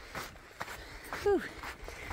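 Footsteps of hikers on a sandy trail, soft and irregular, with a short falling "woo" call a little past halfway.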